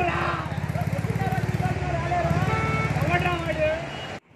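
Untranscribed voices of people talking over the steady, rapidly pulsing rumble of a vehicle engine running close by.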